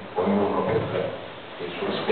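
A man speaking Italian, with a brief pause about halfway through.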